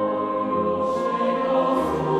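Mixed choir of men's and women's voices singing a sustained chord, with two brief hissing consonants about a second in and near the end.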